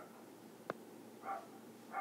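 Quiet room tone with one sharp click about a third of the way in, then a faint, short animal call, like a small dog's bark, a little past the middle.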